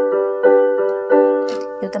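Electronic keyboard on a piano voice playing the same chord, struck about three times with each strike ringing and fading. It is the fifth-degree (V) chord closing a 3-4-1-5 chord progression.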